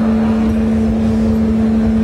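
Loud live rock band holding one steady droning note on amplified electric guitar, over a noisy low rumble, with no drum hits.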